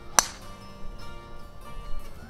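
A golf driver striking the ball off the tee: one sharp, metallic crack with a brief ring, a fraction of a second in. Background guitar music plays throughout.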